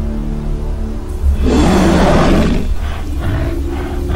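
Tense film score under a bear's roar sound effect. The roar comes about a second and a half in and lasts about a second. Softer, repeated rasping growls follow it.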